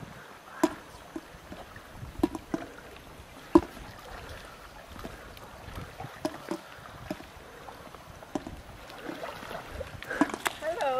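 Swimmers splashing with their strokes in a swimming pool: irregular sharp splashes over a low steady wash of moving water, the loudest splash about three and a half seconds in.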